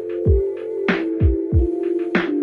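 Background electronic music: a held synth chord over a beat of deep kick drums that drop in pitch, with sharp snare hits between them.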